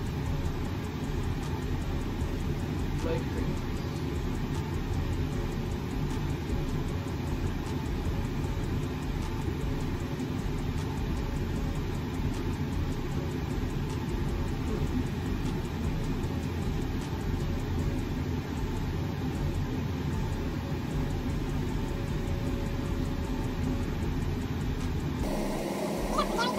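Steady low rumbling background noise with no distinct events, changing abruptly near the end.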